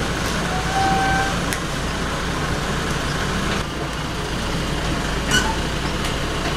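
Suzuki SUV reversing slowly toward the trailer, its engine running steadily. There is a short faint tone about a second in and a brief sharp click near the end.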